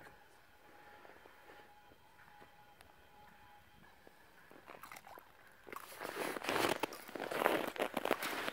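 Faint background music, then from about six seconds in loud crunching and scraping at the ice hole as a fish is hauled up through it by hand.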